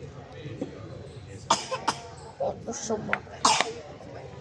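A person coughing, several short coughs in the second half.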